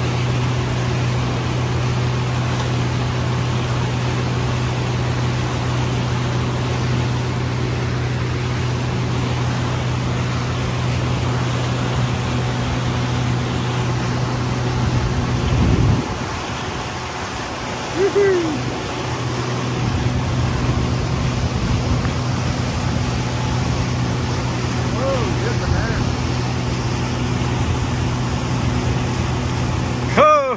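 Mercury outboard motor running at speed, a steady low hum over wind and rushing wake water. About sixteen seconds in there is a louder moment, then the engine hum drops away for a few seconds before returning.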